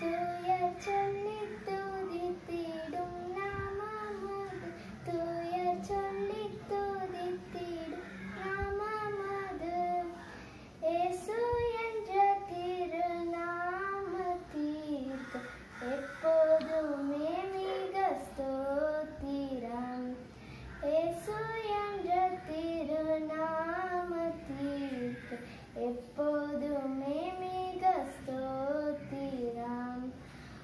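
A young girl singing a Tamil Christian keerthanai solo and unaccompanied, in melodic phrases with short pauses for breath between them.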